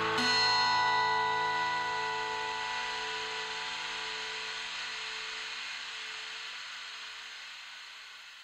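The final guitar chord of a rock song, struck once right at the start and left to ring out, fading slowly and evenly with a faint hiss under it.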